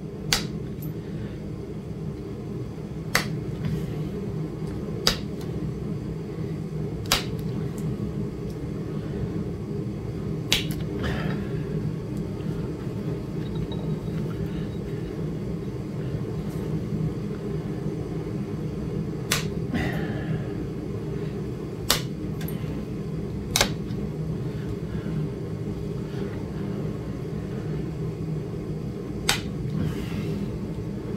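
Copper-tipped pressure flaker pressing flakes off the edge of a raw flint point: sharp single clicks every few seconds, about nine in all, over a steady low rumble.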